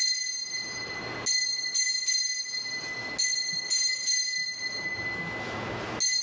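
Altar bells rung in short shakes at the elevation of the chalice, a fresh round of bright, high ringing about every two seconds, each fading into a sustained ring. It is the customary bell signal marking the consecration and elevation of the wine.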